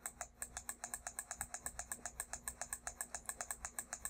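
Computer mouse button clicked rapidly and evenly, a steady run of light clicks at about nine a second, to step a graphing-calculator emulator's trace cursor along a graph.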